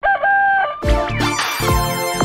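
Title-sting audio: a single held, pitched call lasting under a second, then electronic intro music with a steady beat starting about a second in.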